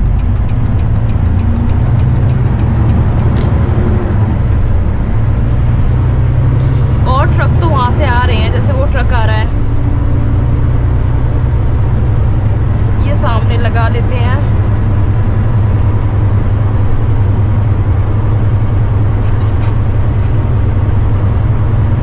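Semi-truck engine and road noise droning steadily inside the cab while driving, with a deep low hum. A voice cuts in briefly twice, about seven and thirteen seconds in.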